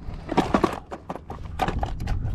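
Irregular clicks and knocks of a hand rummaging through a plastic gear tray on a kayak, hunting for pliers. The loudest knocks come about half a second in.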